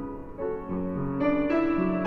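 Upright piano played solo, a slow hymn arrangement in sustained chords, growing louder in the second half.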